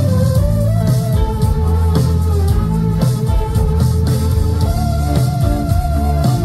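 Live rock band playing loudly: electric guitars holding sustained lines over bass guitar and a drum kit, heard through the stage PA.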